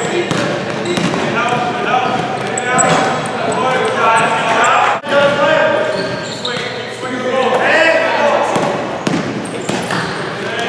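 Basketball game in a gym: the ball bouncing on the wooden court amid players' calls and voices, echoing in the large hall.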